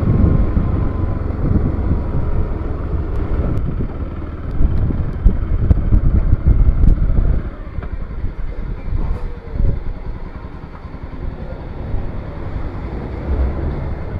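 Bajaj Pulsar NS200's single-cylinder engine running under way, with road and wind noise. About seven and a half seconds in the sound drops to a lower level as the bike pulls up and stops.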